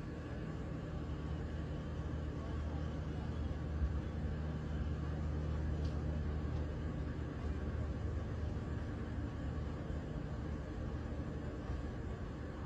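Steady low mechanical drone with a noisy rumble beneath it, swelling slightly in the middle.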